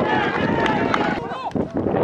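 Several voices shouting over one another over a steady open-air background: players on the pitch and spectators in the stands calling out during play at a football match.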